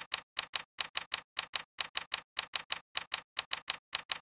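Typing sound effect: sharp key clicks, about five or six a second in an uneven rhythm, with dead silence between them.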